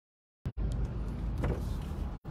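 Steady low rumble of a car driving along the road, with engine and road noise. The audio cuts out to complete silence for about the first half second, and again for an instant just after.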